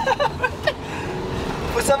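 Steady engine and road noise inside a moving Citroën C15's cabin, with a man singing "la la la" in short snatches at the start and again near the end.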